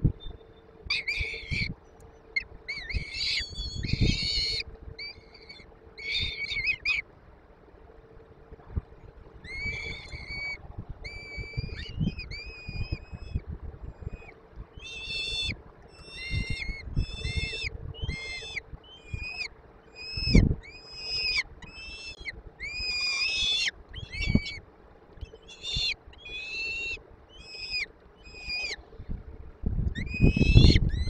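Peregrine falcon chicks begging at the nest while being fed, with runs of short, high-pitched calls and a brief lull about a quarter of the way in. Low thumps of the birds moving on the gravel floor of the nest box come in between.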